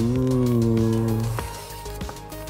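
A man's voice holding one long, drawn-out note that rises slightly at first and stops about a second and a half in, ending with a short click.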